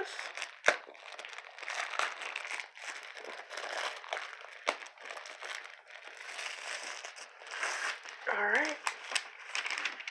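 Clear plastic wrapping crinkling and crackling as hands work it off a rolled diamond-painting canvas, with two sharp clicks, one just under a second in and one near five seconds.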